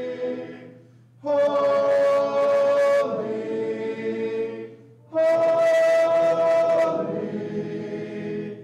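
Congregation singing a hymn unaccompanied, in long held notes with several voices at once, pausing briefly between phrases about a second in and again about five seconds in.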